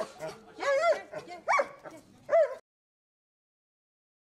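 A dog whining and yelping in several short high calls that rise and fall in pitch, cut off suddenly about two and a half seconds in.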